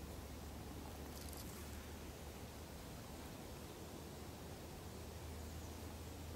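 Faint steady background hiss with a low hum, and a brief soft rustle about a second in.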